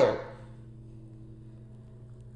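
A woman's last word trails off at the start, followed by a pause holding only a faint, steady low hum of room tone.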